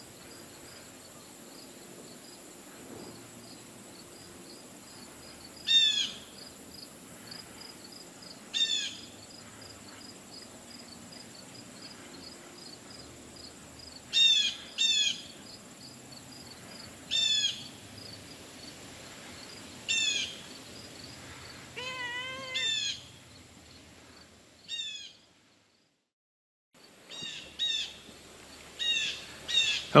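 About a dozen short, high, falling animal calls, a few seconds apart. About 22 s in, a lower arched call repeats four times quickly. A faint rapid ticking runs under the first half.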